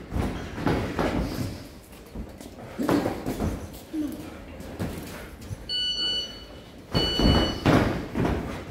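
Boxing sparring: irregular thuds and knocks of gloved punches and footwork on the ring canvas, with a few short grunts. Two brief high squeaks come about six and seven seconds in.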